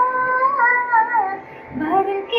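A boy and his mother singing unaccompanied as she teaches him a song line by line, one voice at a time, holding notes that step downward. There is a short break about a second and a half in, then a note rising near the end.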